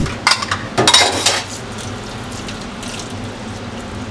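Kitchen tap running into a bowl of sliced potatoes in a stainless steel sink as they are rinsed by hand, with a few louder splashes and knocks of the bowl in the first second and a half. The rinse washes off the sticky starch from the potato slices.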